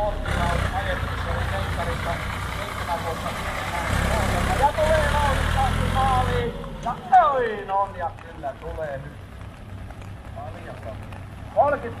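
Vintage tractor engine running as the tractor is driven through the course close by, with voices over it; the engine noise drops away sharply about six and a half seconds in.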